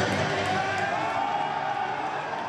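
Voices of a floorball team gathered in a huddle, a jumble of shouts and chatter in a sports hall, slowly fading down.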